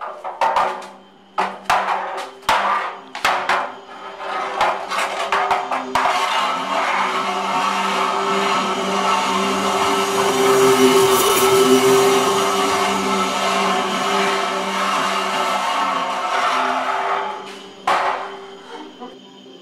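Dramatic film soundtrack: a low droning music bed under a run of sharp, irregular knocks for the first six seconds. Then a loud, dense rushing swell builds to a peak midway and dies away shortly before the end.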